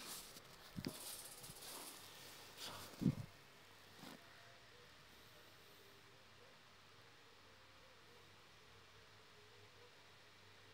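Dressmaking scissors snipping through satin and lace fabric, faint, with the cloth rustling over the first few seconds and a thump about three seconds in; after that, near silence.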